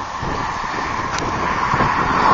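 Steady outdoor noise of wind on the microphone and road traffic, growing a little louder near the end.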